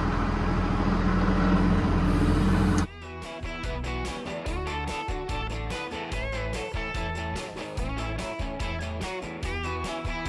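Tractor engine running, cut off abruptly about three seconds in by background music: guitar over a steady beat.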